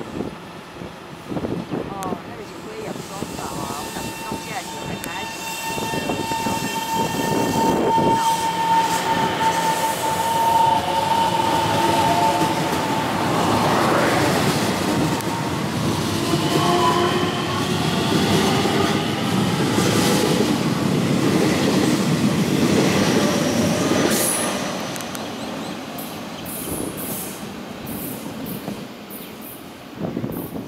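TRA EMU700 electric multiple unit pulling out of the platform. A steady high tone holds for several seconds, then the traction motors whine in rising pitch as the train gathers speed past, with wheel and rail noise. It is loudest through the middle and dies down after a sudden break near the end.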